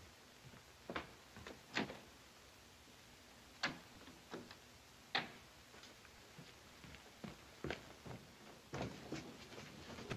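Slow, uneven footsteps with small knocks, a sharp step or knock about every second or so, the clearest ones near one, two, three and a half and five seconds in.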